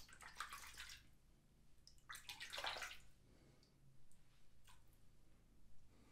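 Two scraping strokes of a metal Bevel safety razor through lathered head hair, each about a second long and about two seconds apart.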